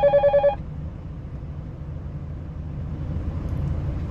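A short electronic beep, a rapidly pulsing tone lasting about half a second, right at the start, following radio talk. It is followed by a steady low hum inside the parked truck's cab.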